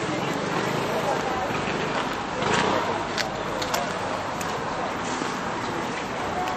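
Outdoor street ambience: indistinct voices of people talking nearby over a steady background of urban traffic noise. A short louder noise comes about two and a half seconds in, followed by a few light clicks.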